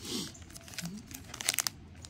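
Foil trading-card booster pack wrappers crinkling as they are handled, with a cluster of sharper crackles about one and a half seconds in.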